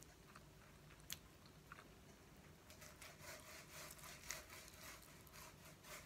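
Faint, wet chewing and mouth sounds of a person eating fried instant noodles, turning into a dense run of quick soft clicks in the second half. A single sharp click about a second in.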